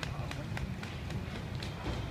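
Running footsteps on paving, about four a second, over a steady low rumble.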